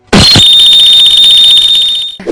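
Edited-in sound effect: a short, loud blast like an explosion, then a loud, high-pitched steady ringing tone with a fast flutter, held for over a second and a half before fading.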